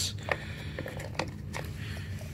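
Plastic screw cap of a car's brake fluid reservoir being twisted off by hand, giving a few scattered light clicks and rubs of the plastic threads.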